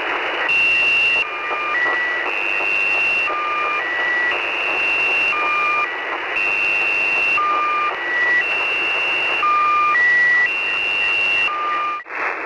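Shortwave radio reception of the Russian military station The Squeaky Wheel sending its squeaky channel-marker tones over steady receiver hiss. A group of beeps repeats about every two seconds: a long high tone, then shorter lower ones.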